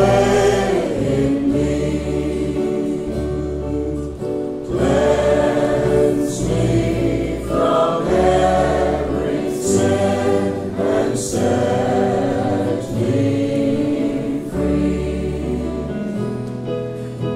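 Worship music: a choir singing in sustained phrases over held bass notes that change every couple of seconds.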